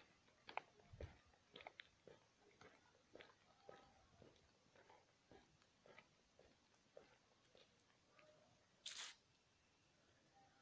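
Near silence with faint, irregular clicks and rustles, and one brief louder rustle about nine seconds in.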